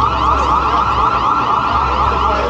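A loud siren with a rapid warble, pitched about an octave above middle C.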